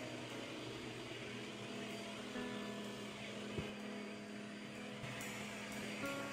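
Handheld vacuum cleaner running: a steady whooshing noise with a low motor hum, with a single sharp knock a little past halfway.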